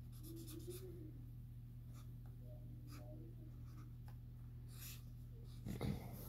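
Faint scratching and rustling of paper, with a steady low hum underneath.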